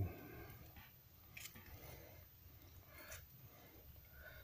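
Near silence: low room tone with a few faint, soft clicks from a small paintbrush dabbing in a glass jar of metal-leaf adhesive and on a lure.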